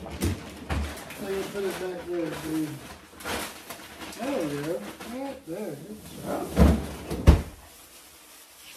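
A young child's wordless, sing-song vocalizing that rises and falls in pitch, with a few light knocks. Near the end come two loud thumps as a refrigerator's pull-out bottom freezer drawer is pushed shut.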